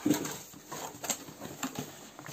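Cardboard box flaps and packing material being handled as the box is opened: a few short taps and crinkles, the loudest just after the start.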